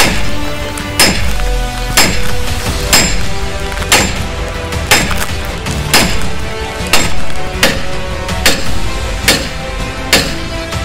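Hammer blows on a steel drift, driving a seized front wheel hub and bearing out of the steering knuckle. About one sharp metallic strike a second, coming a little faster near the end.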